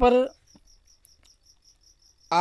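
Faint, steady high-pitched insect chirping, about five chirps a second, behind the pause in a voice.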